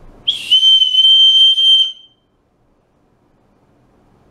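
A dog-training recall whistle blown once in a single long, steady, high blast of just under two seconds, a little higher at the very start. It is the recall signal calling the dogs in.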